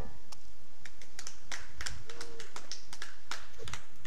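A few people clapping sparsely and unevenly, scattered single handclaps at the end of a piano performance, as the piano's last notes cut off.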